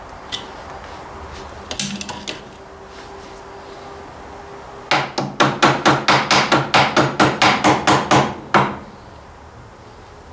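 Hammer striking steel on a Ford 800 tractor's front-axle steering linkage: a quick run of about sixteen ringing metal-on-metal blows, about four to five a second, starting about five seconds in and lasting about three and a half seconds, knocking back into line a part that had gone in crooked. A few light tool clicks come earlier.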